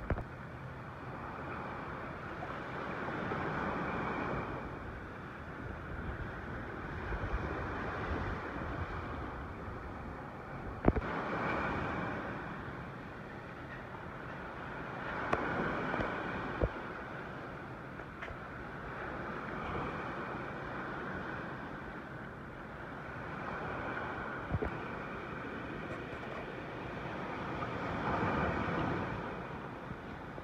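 Storm surf breaking and washing up the beach in surges about every four seconds, with wind on the microphone. A few sharp knocks are heard, around a third of the way in, midway and near the end.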